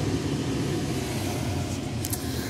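Duramax 6.6-litre V8 turbo-diesel idling steadily, heard from inside the cab, under a steady rush of air from the cab's heater blower.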